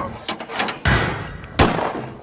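A run of hard knocks and thumps, about four in two seconds, each with a short ringing tail.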